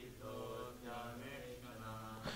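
A group of voices chanting a Sanskrit verse line together, faint and off-microphone: the congregation repeating the line after the leader.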